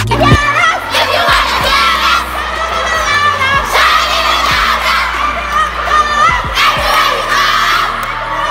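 A group of children shouting and cheering together, many high voices at once, loud throughout.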